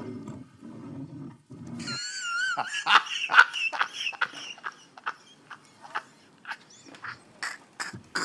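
A man's loud, high-pitched laughter: a wavering shriek about two seconds in, then a run of short cackling bursts that thin out toward the end.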